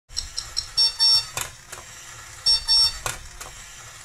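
Electronic alarm of a Cozy Cone toy alarm clock beeping in high-pitched groups: three quick beeps, then pairs of longer beeps. A few sharp clicks fall between the beep groups.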